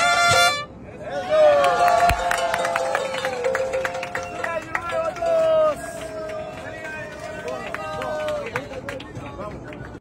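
Recorded music cuts off about half a second in, and then several people's voices sing and shout loudly together, overlapping.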